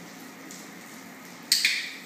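A dog-training clicker clicked once about one and a half seconds in, a sharp double click-clack, marking the puppy's correct down-stay before the treat.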